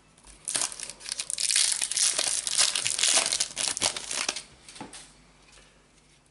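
Crinkling and tearing of a foil trading-card booster pack wrapper being ripped open, a dense crackle starting about half a second in and lasting some four seconds, then dying down to a few light rustles.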